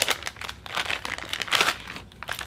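Small clear plastic parts bag crinkling as it is handled: a short crinkle at the start, then a longer run of crinkling in the middle.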